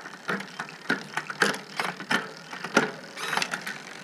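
Shimano Di2 electronic drivetrain on a pedalled bike: a run of irregular clicks as the chain is shifted across the rear cassette cogs, and a brief whir a little past three seconds in as the chain moves onto the big chainring and the rear derailleur compensates in synchronized shifting.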